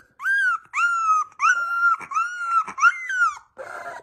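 Very young Siberian husky puppy whining in a string of about six high, thin cries, each about half a second long, with short gaps between them.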